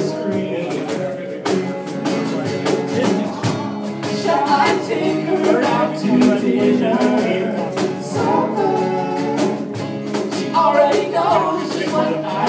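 A live band playing a song: acoustic guitar strumming with sung vocal lines coming in several times.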